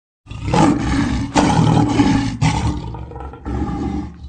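Big-cat roar sound effect: about four loud roars, each starting suddenly, roughly a second apart.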